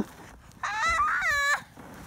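A child's high-pitched squeal, about a second long, starting about half a second in.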